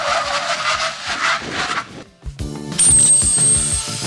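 Tyre screech from hard braking: a loud hiss with a squealing tone that stops about two seconds in. Music with a steady beat then starts, with a thin high ringing tone held for about a second.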